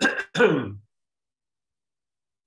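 A man clearing his throat: two short rasping bursts within the first second, the second falling in pitch.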